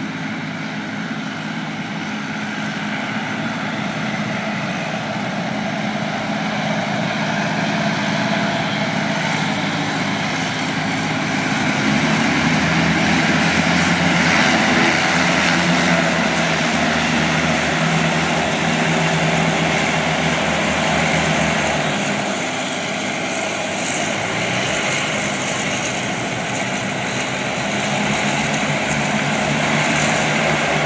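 Passenger hovercraft's engines and ducted propellers running loudly and steadily with a deep hum. The sound grows louder about twelve seconds in as the craft comes up the beach, eases off a little past twenty seconds, then swells again near the end.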